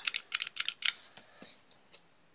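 Small plastic toy pellet gun handled up close: a quick run of light plastic clicks and rattles in the first second, as its trigger and parts are worked by hand.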